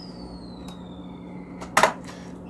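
One sharp click near the end over a steady low hum. A faint high tone slides down in pitch during the first second and a half.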